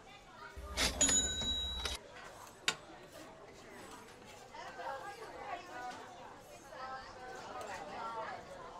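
Background chatter of people around a street food stall, with a loud ringing metallic scrape lasting about a second and a half near the start and a sharp click just after.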